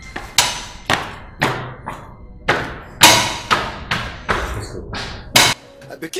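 A series of loud, sharp thuds, roughly two a second, each ringing out briefly before the next, stopping just before the end.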